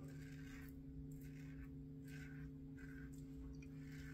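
Faint short scrapes of a Merkur 34C double-edge safety razor with a Wilkinson Sword blade cutting lathered stubble, about four strokes, over a steady low hum.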